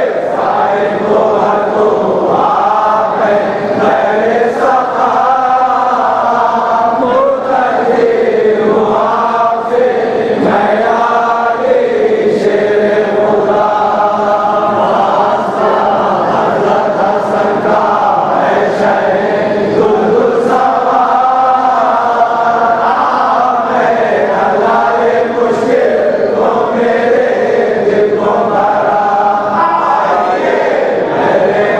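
Men chanting a munajat, a Shia devotional supplication, as a continuous melodic chant with many voices together.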